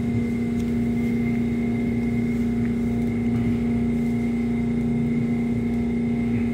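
Busan Metro Line 1 subway train moving through a station, heard from inside the car: a steady low motor hum with a fainter high whine over the low rumble of the running gear.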